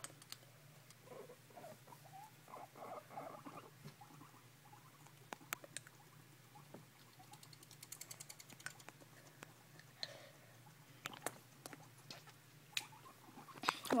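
Guinea pig chattering its teeth: sharp clicks, scattered singly and in a quick run about eight seconds in. In guinea pigs this chattering is a warning sign of annoyance or agitation.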